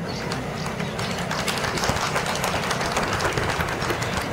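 Crowd applauding: a steady patter of many hands clapping at once.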